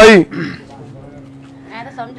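Men's voices: a loud, drawn-out voiced call that breaks off just after the start, then faint talk near the end, over a steady low hum.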